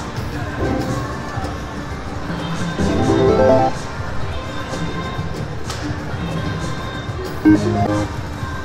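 Aristocrat Cash Express Mega Line slot machine playing its 50 Lions game, with reel-spin music and jingles. There is a louder run of win chimes about three seconds in and a short sharp jingle near the end as small wins pay out, over a murmur of casino crowd.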